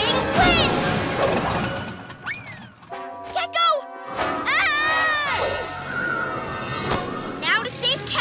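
Action cartoon soundtrack: background music under a fast chase, with quick rising-and-falling swooping sounds, short wordless character cries and a few sharp hits.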